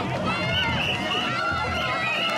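Many voices of a crowd of float pullers shouting and calling over one another as they haul a yamakasa festival float by rope, steady and loud.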